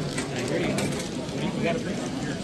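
Voices of people talking indistinctly.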